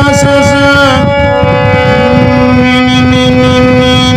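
Damaged harmonium sounding long held chords, the notes shifting about one and two seconds in, with a voice sustaining a note over it.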